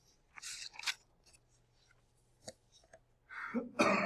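A man coughing near the end, after a short breathy sound about half a second in and a couple of faint clicks.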